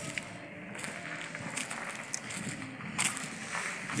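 Quiet outdoor background noise with a few faint clicks and knocks, as from a phone carried by someone walking.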